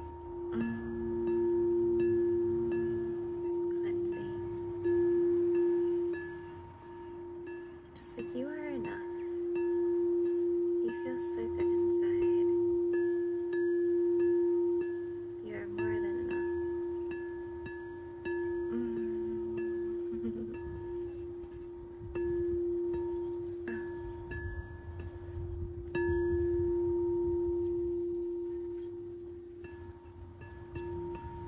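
Pink crystal singing bowl tuned to the heart chakra, played with a mallet: one steady ringing tone with fainter higher overtones, swelling again every five seconds or so as the mallet renews the ring.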